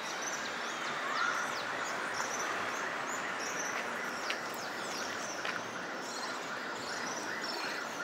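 Outdoor ambience: many small birds chirping in quick, high calls over a steady background hiss.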